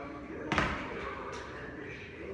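A single thump about half a second in: feet landing on a gym floor mat as a person comes down out of a kicked-up handstand.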